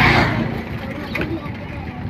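Indistinct voices over a steady mix of background noise, with a brief swell of noise at the very start.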